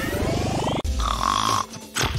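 Cartoon snore sound effect: a rattling inhale rising in pitch, then a short whistling exhale.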